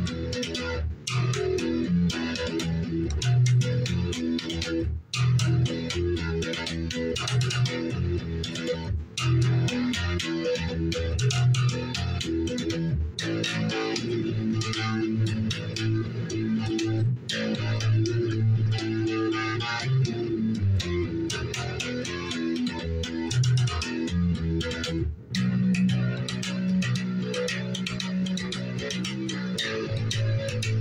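Red electric guitar played fingerstyle, mostly low notes in repeating phrases. Brief breaks in the playing come roughly every four seconds.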